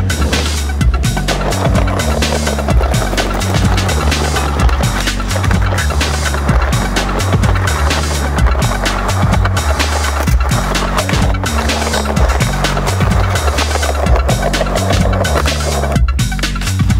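Skateboard wheels rolling over concrete and stone paving, with occasional sharp clacks of the board, under electronic music with a repeating heavy bass line.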